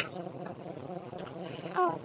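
Faint room noise on a webcam microphone, with one short vocal sound from a girl, falling in pitch, near the end.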